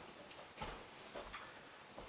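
Faint footsteps and body movement of a person walking a few steps into place: a few soft taps over quiet room tone.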